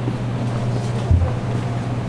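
Steady low hum of store background noise, with a single low thump about a second in.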